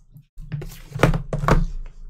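A sealed cardboard trading-card hobby box being set down and handled on a tabletop: a few dull thunks, the loudest about a second in and again half a second later.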